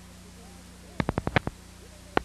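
A steady low electrical hum, broken about a second in by a quick run of about six sharp clicks within half a second.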